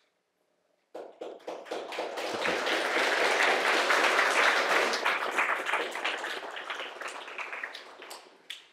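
Audience applauding: many hands clapping, starting suddenly about a second in, building to a peak and then dying away near the end.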